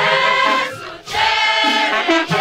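Large mixed choir of young men and women singing together, holding long notes in two phrases with a short break about a second in.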